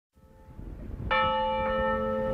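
A bell struck once about a second in and left ringing with several steady tones, after a short fade-in from silence, opening a piece of music.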